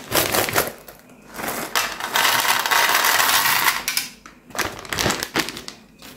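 Paper candy pouch crinkling, then a stream of small hard-shelled candies pouring into a metal tin as a dense rattle lasting about two seconds, followed by a few scattered clicks.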